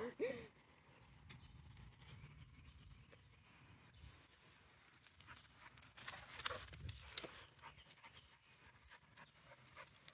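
A dog panting faintly as it runs up close, with a few light clicks and rustles between about five and seven seconds in.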